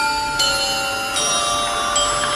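Dance music track of ringing bell chimes: a new bell note is struck about every three-quarters of a second, and each note rings on under the next.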